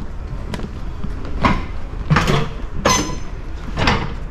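Footsteps going down a travel trailer's aluminum entry steps: a run of heavy, clanking footfalls about three-quarters of a second apart.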